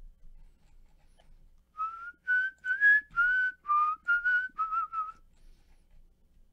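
A man whistling a short tune of about nine notes, each slightly wavering in pitch.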